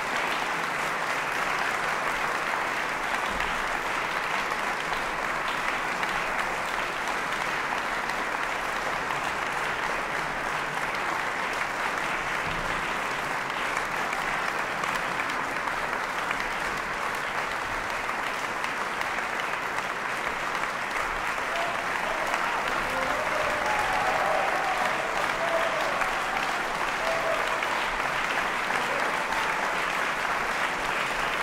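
A large audience applauding, dense and steady, swelling slightly about two-thirds of the way through.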